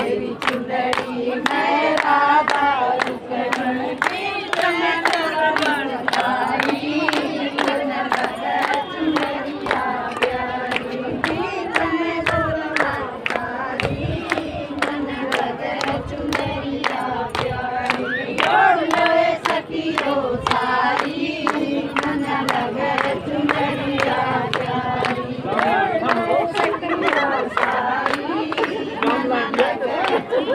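A group of women singing a Haryanvi bhajan together in chorus, with steady rhythmic hand clapping keeping the beat.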